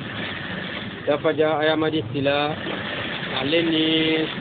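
A voice in long, drawn-out phrases with held, wavering notes, between speech and chant, over a steady low rumble. The sound is muffled and narrow, like a low-quality recording.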